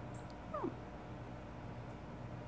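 A brief animal cry about half a second in, falling steeply in pitch, over a steady low hum.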